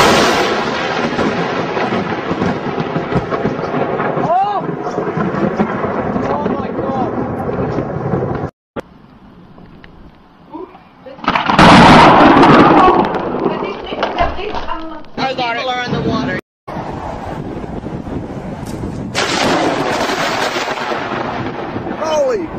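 Thunder from close lightning strikes. A sudden, very loud clap about halfway through rumbles away over a couple of seconds, among stretches of steady storm rumble. The sound cuts off abruptly twice between takes.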